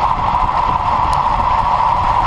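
Steady rush of wind and road noise on a bike-mounted camera moving at about 60 km/h, with a strong, even hum in the middle range over a low rumble. A faint tick a little over a second in.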